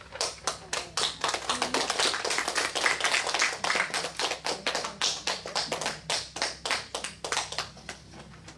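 A small audience applauding: a round of quick, irregular individual hand claps that thins out and fades near the end.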